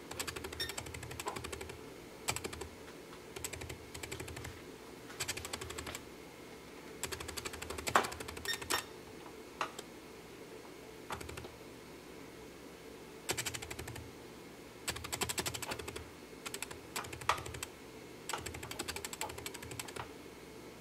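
Short bursts of fast, even clicking, each lasting up to about a second, recurring irregularly with a low hum under each burst. One sharper click stands out about eight seconds in.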